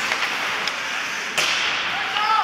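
Ice hockey game sound: skates scraping on the ice over a steady rink din, with one sharp crack of the puck about one and a half seconds in.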